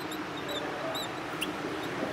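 Whiteboard marker squeaking as it writes: several short, high squeaks in the first second and a half, over steady room noise.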